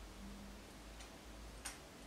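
Near silence: faint low room hum with two faint clicks, one about a second in and a slightly louder one a little later.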